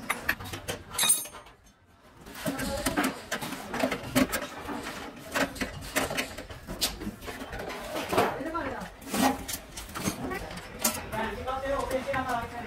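Hand tools clicking and knocking against stainless-steel sheet and brass fittings as gas-stove valve fittings are tightened with pliers and a screwdriver, in a series of short, irregular clicks.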